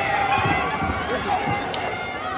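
Crowd of spectators in an arena shouting and talking over one another, many voices at once, with one high yell held for a moment.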